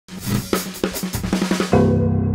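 Intro music sting: a drum fill on a kit, its strikes coming faster and faster, giving way near the end to a sustained low chord.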